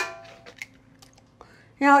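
An egg knocked once against the rim of a stainless-steel stand-mixer bowl: a sharp crack with a brief metallic ring that fades, followed by a few faint small clicks.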